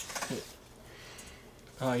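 A short bit of voice near the start, then a quiet stretch of room tone before speech starts again near the end.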